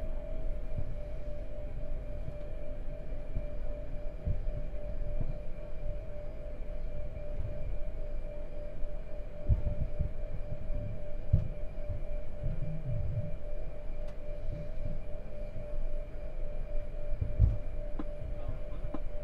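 Steady machine hum inside an Airbus A220 cockpit while the left engine is starting during pushback: a constant mid-pitched tone over a low rumble, with a few dull low thumps.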